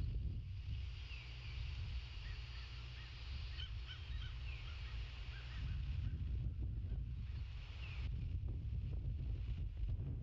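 Wind rumbling on an outdoor microphone, with faint high chirps from birds in the distance: a scattering of short calls in the first half and one more later.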